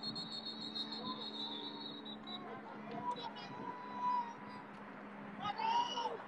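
Referee's whistle blown in one long, steady blast of about two seconds, stopping play for a false-start penalty. A low steady hum runs underneath, and a voice shouts near the end.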